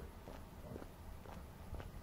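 Faint footsteps of a person walking on an asphalt path, about two steps a second.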